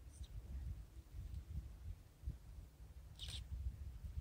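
Low, uneven background rumble with one brief, sharp rustling noise a little after three seconds in.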